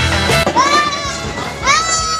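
Rock music cuts off about half a second in. It is followed by two long, high-pitched shouts from children playing in a pool, each rising and then held.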